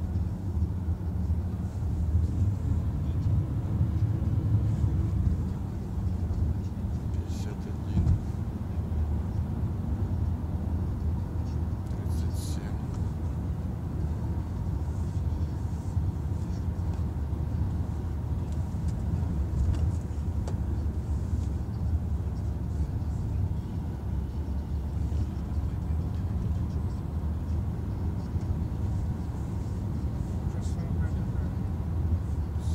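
A car being driven, heard from inside the cabin: a steady low rumble of engine and tyres on the road, with a brief knock about eight seconds in.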